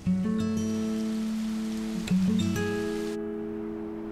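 Background music: acoustic guitar strumming sustained chords, one struck at the start and a second about two seconds in.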